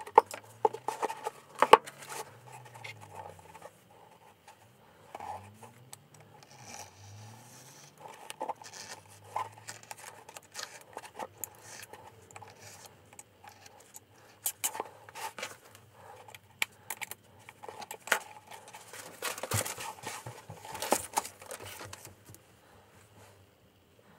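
Snap-off craft knife cutting book cloth along a turn-in gauge: irregular scratching strokes mixed with clicks and light taps of tools being handled, the sharpest clicks in the first two seconds.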